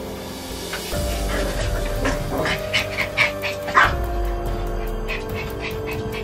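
A dog barking and yipping in a quick series of short calls, loudest in the middle, over background music of long held notes.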